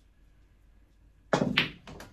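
A snooker shot on a small 6x3 table: the cue strikes the cue ball with a sudden thunk and a second knock follows about a quarter second later, as the ball makes contact, ringing briefly before it fades.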